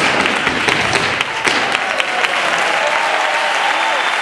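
Theatre audience applauding: dense, steady clapping with sharper single claps standing out, busiest in the first two seconds.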